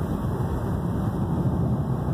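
Steady rush of wind through an open car window at road speed, with tyre and road noise beneath.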